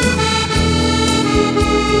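Musette accordion playing a boléro melody in long held notes over a bass-and-drum accompaniment beat.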